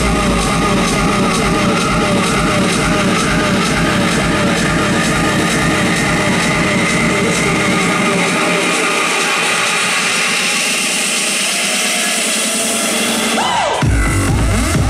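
Electronic dance music from a live DJ set, played loud through a large hall's sound system. About eight seconds in the bass drops out for a build-up with a rising noise sweep, and the beat comes back in at the very end.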